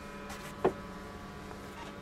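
A faint steady hum, with one short sharp sound from the speaker about half a second in.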